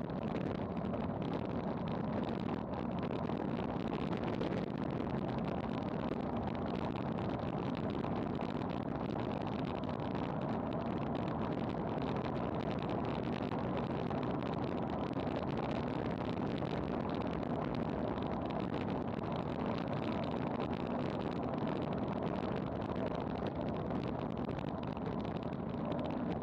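Wind rushing over an action camera's microphone on a road bike descending at 30 to nearly 40 mph: a steady roar with no breaks.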